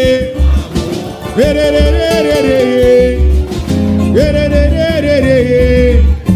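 Live samba: a group of voices singing the same melodic phrase twice, over a plucked string instrument and a steady low drum beat.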